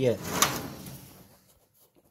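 A brief sliding clack about half a second in, from the loose sheet-metal front panel of a kerosene wick heater being handled, its screws not yet put in. The sound dies away within about a second.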